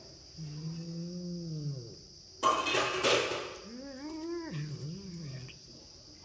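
A tabby cat growling over its food: a long low moaning growl, a loud hissing burst about two and a half seconds in, then a second wavering growl that rises and falls. It is a warning to keep away from the chicken feet it is eating.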